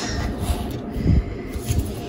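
Handling noise as a hand takes a foil Pokémon booster pack off a stack on a wooden table: low rustling and shuffling, with a soft knock about a second in.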